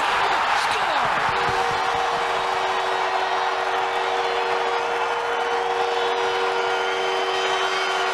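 Hockey arena crowd cheering a home-team goal, loudest right at the start. From about a second in, the arena goal horn sounds a long, steady chord over the cheering.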